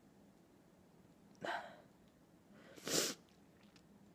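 Two short, sharp exhalations from a woman, about a second and a half apart, the second one louder.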